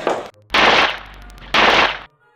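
Two gunshots about a second apart, each a loud sudden crack with a short ringing tail.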